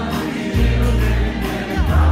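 A live country band playing, with several voices singing over a steady bass line.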